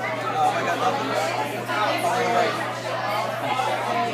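Several people chatting with overlapping voices, over a steady low electrical hum.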